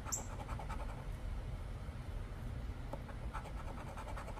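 A coin scratching the coating off a lottery scratch-off ticket in quick short strokes, busiest in the first second and again a little after three seconds in.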